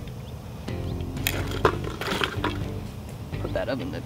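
A few sharp clicks and scrapes of metal tongs against charcoal briquettes and the steel fire pit, over background music.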